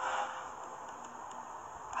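Steady background hiss, with a brief soft swell of noise at the very start.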